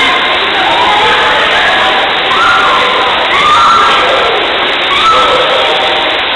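A crowd of children shouting and calling out over one another, many high voices rising and falling.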